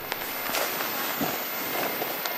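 Camera handling noise as the camera is picked up and moved against a nylon jacket: soft rustling and a few light knocks over steady background noise.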